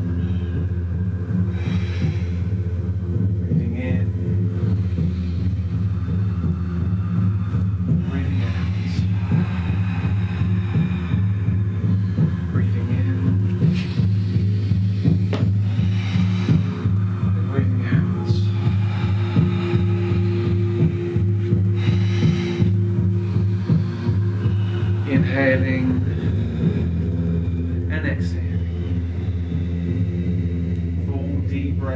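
A group of people breathing deeply, with audible in- and out-breaths through the mouth coming every few seconds at irregular moments, over a steady low humming drone.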